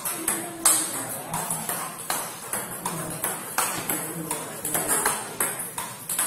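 Table tennis multiball drill: a steady run of sharp clicks, about two a second, as celluloid-type balls are struck off rubber-faced bats and bounce on the table.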